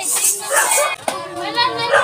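Excited voices of several young girls calling out together, overlapping and high-pitched, with a short lull about a second in.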